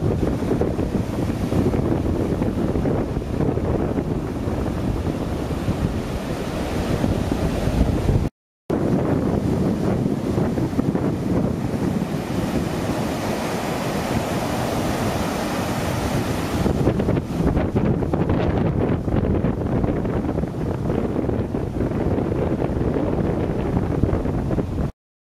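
Surf breaking and washing up a sandy beach, with strong wind buffeting the microphone in a heavy low rumble. The sound cuts out for a moment about eight seconds in.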